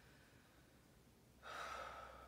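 Near silence, then about one and a half seconds in, a woman's single heavy breath out: she is winded from a set of tuck jumps.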